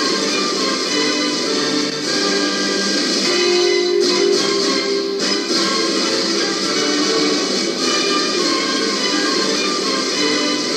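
Music playing from a vinyl picture disc on a turntable, the stylus tracking the groove; the music runs steadily with many sustained notes and little deep bass.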